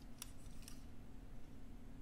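Light handling noise of a small die-cast metal toy car being turned in the fingers, with two faint clicks in the first second.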